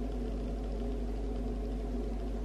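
A steady low hum with no sudden sounds, from a running kitchen appliance.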